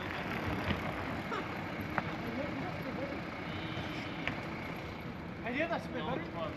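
Steady outdoor street background of traffic-like hum, with faint voices in the distance and a single click about two seconds in.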